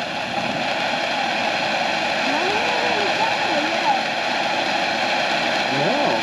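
Miracle Fireworks Betty Butterfly ground fountain burning with a steady spark-spray hiss. It is a really quiet one for a fountain, with no crackle or bangs.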